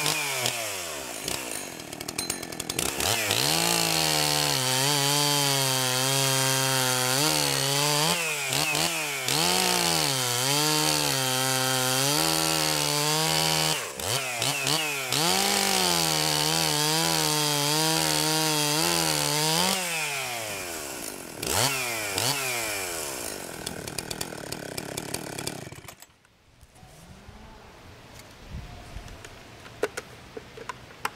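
Husqvarna 266XP two-stroke chainsaw running at full throttle while cutting rounds off a log, its engine pitch dipping and recovering several times. About twenty seconds in the revs fall away, and the engine shuts off near the end.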